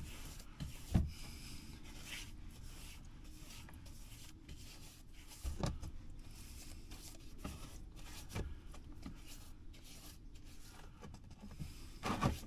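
A brush scrubbing caked chain oil and grime off a plastic motorcycle part over a diesel-and-petrol cleaning bath: a quiet, steady scratchy rubbing, broken by three short knocks.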